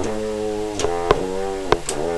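A Conn single F French horn, which its owner takes to be a 1921 Director 14D, playing a phrase of held notes that change pitch about every half second. Two notes near the middle and near the end start with sharp attacks.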